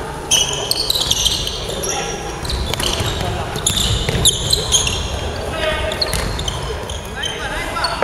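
Basketball play on a hardwood gym floor: sneakers give many short, high squeaks as players cut and stop, with the ball bouncing, echoing in a large hall. Players' voices call out now and then.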